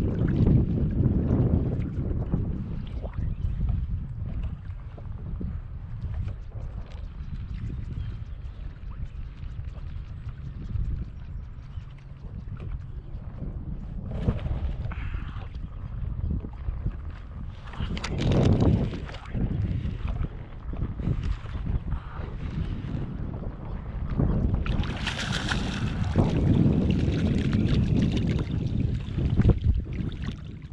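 Wind buffeting the microphone over small waves slapping a plastic kayak hull, with a few short louder rushes of water. Near the end a hooked fluke splashes at the surface beside the kayak.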